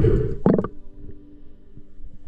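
A loud, muffled rush of water on an underwater camera, in two surges over the first half second or so. It sits over background music with steady held notes, which carries on alone after that.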